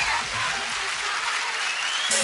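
Audience clapping over electronic DJ music that thins out, its bass dropping away about a quarter second in.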